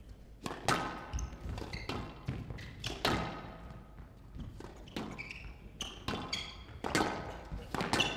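Squash rally: the ball cracking off rackets and walls about once a second at an uneven pace, with short squeaks of court shoes on the floor between shots.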